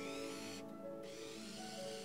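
Soft background music of sustained tones, with a faint high whirring that starts, stops briefly and starts again: a small Anki Vector toy robot driving off on its treads.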